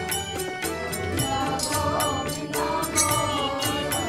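Devotional music: a voice chanting a mantra-like melody over regular, quick percussion strokes.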